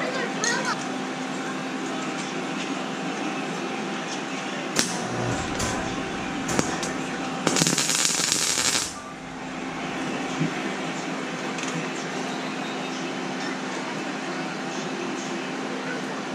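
Electric arc welding on a steel cart frame: a short burst of arc crackle, a little over a second long, about halfway through, over a steady hum. A few sharp clicks come in the seconds before it.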